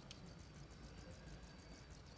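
Near silence: faint room tone with a low hum and one faint click just after the start.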